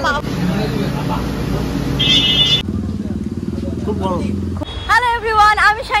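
Motor vehicle engine running with road noise, a short high horn beep about two seconds in, then a stronger low engine drone for about two seconds before a woman's voice comes in near the end.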